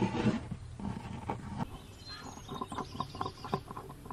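Pencil scratching on plywood as lines are drawn along a steel rule: a few rasping strokes, then lighter quick ticks and scratches from about halfway through.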